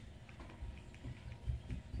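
Handling noise from a plastic twist-up lip crayon being turned in the hands to wind the crayon up: faint rubbing with a few soft, low bumps, about a second in and again near the end.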